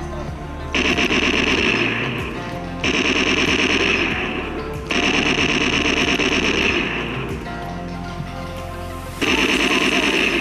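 Background music, over which come four loud bursts of rapid-fire shooting sound from a laser tag tagger, each lasting one to two seconds.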